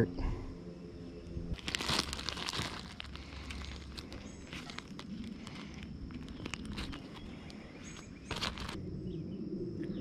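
Clear plastic zip-top bag crinkling as it is opened and handled. There are two louder bursts of rustle, one about two seconds in and a short one near the end, with small crackles and clicks between.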